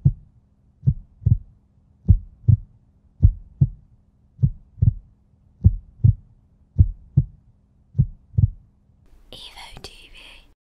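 Heartbeat sound effect: pairs of low thumps in a lub-dub rhythm, about one pair every 1.2 seconds, over a faint steady low drone. Near the end the beats stop and a short breathy, hissing noise takes over.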